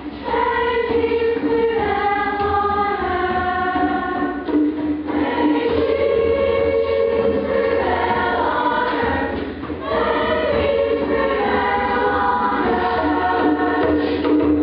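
Combined children's choir singing in unison and harmony, holding long notes, with short breaks between phrases near the start and about ten seconds in.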